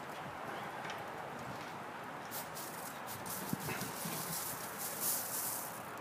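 Faint scraping and rustling from about two seconds in until near the end, as a metal pizza peel is worked to slide a raw meatloaf off onto the mesh mat on a kamado grill grate, over a steady low hiss.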